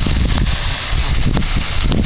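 Wind buffeting the microphone: a loud, steady low rumble. Three short sharp clicks break through it.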